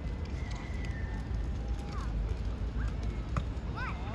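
Outdoor ambience of a youth football match: a steady low rumble with a few short, faint shouts from children on the pitch and a single sharp click a little after three seconds in.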